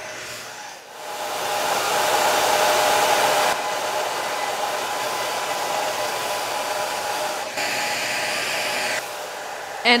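Revlon hand-held hair dryer running: a steady rush of air with a motor whine. It swells over the first second, then drops a step in level about 3.5 s in and again near the end.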